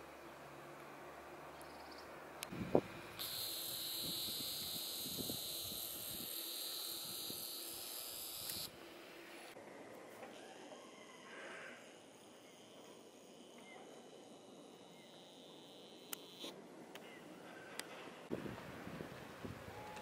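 Quiet outdoor ambience in which a high, steady insect chirring runs for about five seconds in the first half, then stops abruptly. Faint hiss and a couple of small clicks make up the rest.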